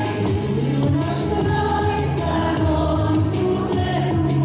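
A large mixed choir singing together over instrumental accompaniment with a steady beat.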